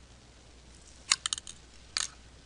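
Metal dissecting instruments clicking and snipping: a quick run of four sharp clicks just past a second in, then one more near the end.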